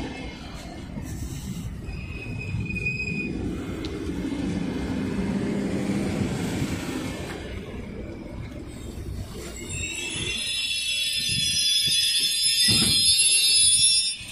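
Double-deck passenger carriages of an arriving train rolling slowly past with a low rumble. From about ten seconds in, a high squeal with several tones sets in as the train slows and grows louder, then stops suddenly near the end.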